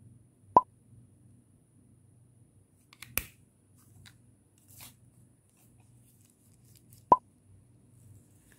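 Two sharp, loud clicks from a plastic makeup compact and cases being handled, about a second in and again near the end, with a brief crackle of plastic sheeting in between.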